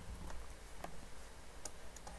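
A few faint, separate clicks, about three in two seconds, from computer input as a blank notebook page is opened, over a low steady background hum.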